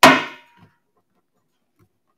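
Auctioneer's gavel struck once on the rostrum, a single sharp knock that rings and dies away within about half a second: the hammer falling to mark the lot as sold.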